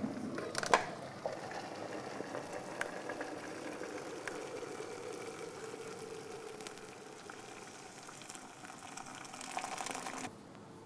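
Liquid bubbling steadily in a pot on the stove, with two light clinks in the first second.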